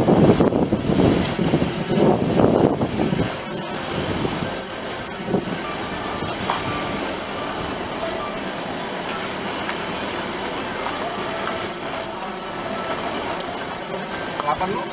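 Hyundai i20 heard from inside its cabin while driving slowly: steady engine and road noise, louder for the first three seconds or so and then level.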